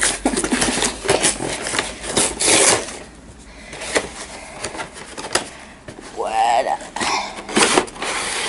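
A cardboard collector's box and its plastic packaging being torn open by hand: an irregular run of ripping and crackling. About six seconds in there is a short vocal sound.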